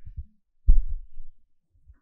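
A few dull low thumps, one much louder than the rest about two-thirds of a second in, dying away quickly.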